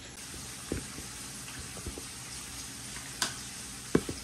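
Steady hiss with a few faint clicks and a sharper click near the end.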